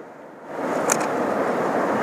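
Sea surge washing in among shoreline lava rocks: a rushing swell that rises about half a second in and holds, with one sharp click about a second in.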